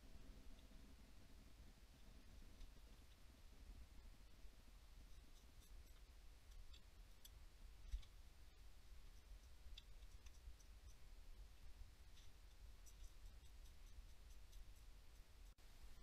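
Near silence, with faint scattered small clicks and one slightly louder knock about eight seconds in, from gloved hands handling the turbocharger's metal parts and bolts.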